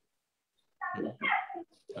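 A dog barking twice in quick succession about a second in, heard through a video call's audio.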